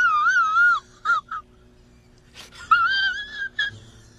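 A man crying in a high, wavering falsetto wail: one drawn-out sob at the start, two short catches after it, then a second long sobbing whine about three seconds in.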